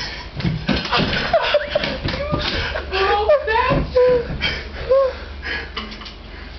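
Several people laughing and exclaiming, with thumps and knocks among the voices as a round floor lamp is knocked over.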